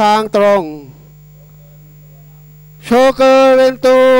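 Race commentator calling a horse race in long, drawn-out phrases: one phrase trails off about half a second in, and another starts about three seconds in. Under it runs a steady electrical hum from the recording, which is all that is heard in the gap between.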